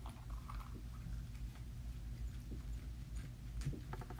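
Faint handling noises as a harmonica case is opened: a few small clicks and rustles, over a low steady hum.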